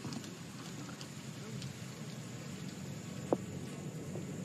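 Quiet outdoor ambience on a golf course with faint distant voices, broken by one short knock a little after three seconds in.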